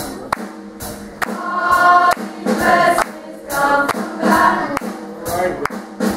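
Youth gospel choir singing in several held phrases over sharp percussive beats, about two a second.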